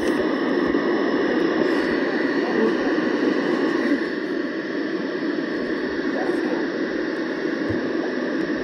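RadioShack 12-996 NOAA weather radio hissing with steady static on weather channel 1, a little softer about halfway through. No station is coming in: the attempt to receive the distant transmitter fails.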